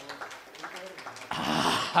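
Small audience clapping, with scattered voices among them; the clapping swells into a louder, denser burst about a second and a half in, and a short laugh comes at the very end.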